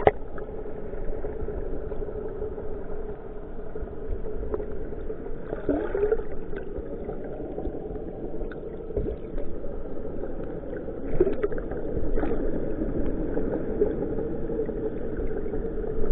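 Muffled underwater sound from a submerged camera: a steady drone, the fishing boat's engine carried through the water. Bubbling and swirling water swells about six seconds in and again around eleven seconds.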